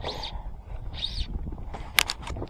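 Wind rumbling on the microphone out on open water, with two faint short hisses and one sharp click near the end.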